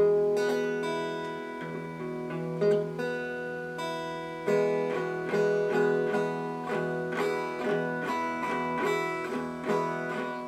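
Electric guitar being picked, single notes and chords ringing out. A sharp stroke opens it and another comes a little before three seconds in. From about four and a half seconds in, a steadier run follows at about two notes a second.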